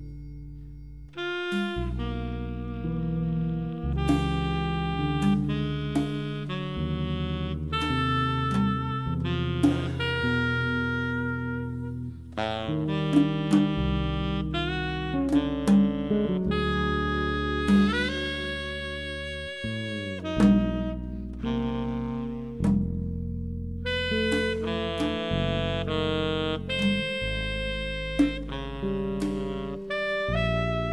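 Jazz ensemble music led by saxophone, with several instruments holding layered sustained notes that change every second or two. The ensemble comes in loudly about a second in, after a quieter opening.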